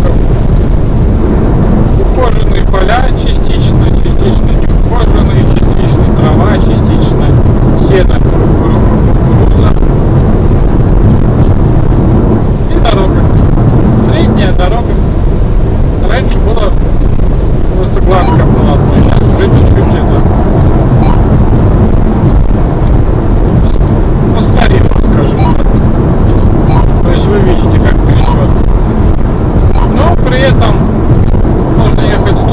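Steady loud road and wind rumble of a car at motorway speed, heard inside the cabin, with scattered small clicks and knocks.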